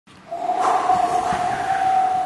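Opening sound effect of a branded intro sting: a single high tone held steadily over a rushing noise, starting a moment in.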